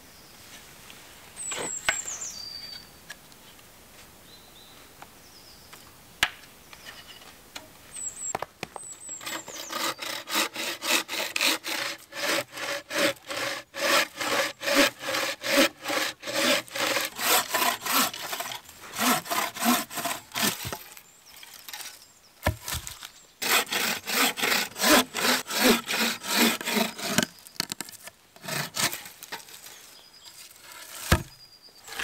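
Wooden-framed bow saw cutting through a small tree trunk in steady push-pull strokes, about two a second, starting about nine seconds in, with a short pause about two-thirds of the way through before a last run of strokes. Before the sawing there are a knock and a few short high chirps.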